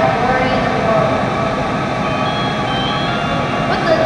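Steady loud mechanical background noise, a continuous hum and hiss like air-handling or pool machinery, with a few faint brief pitched sounds on top.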